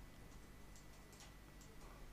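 Near silence: faint room tone with a thin steady high tone, in a pause between spoken sentences.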